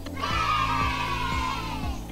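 A group of children giving a drawn-out cheering answer, slightly falling in pitch, over background music with a steady beat.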